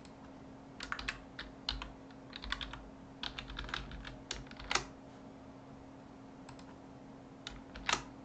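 Computer keyboard typing: a quick run of keystrokes for about four seconds, the sharpest one about halfway through, then a few isolated keystrokes near the end.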